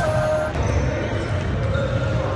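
Basketballs bouncing on a hardwood gym court, with background music.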